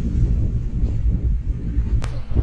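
Steady low rumble of a safari vehicle driving on a forest track, with wind buffeting the microphone.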